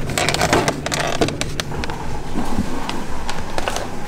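Plastic food containers of strawberries and blueberries being pulled from the fridge and handled: a quick run of clicks and rattles in the first couple of seconds, then scattered single clicks.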